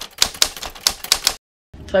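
Typewriter key-strike sound effect: a quick run of sharp clacks, about four or five a second, as the title types out, cutting off suddenly about a second and a half in.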